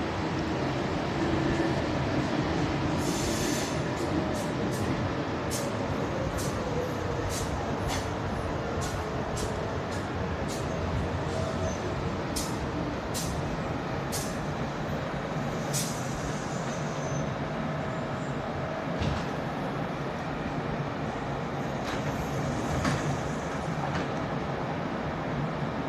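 Electric train running through a station, a steady rumble with a faint whine, and a run of sharp, irregular high ticks through the first two-thirds.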